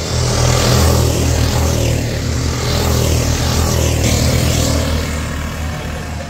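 Rental go-kart engines running on the circuit as karts drive past, loud and steady, easing off slightly near the end.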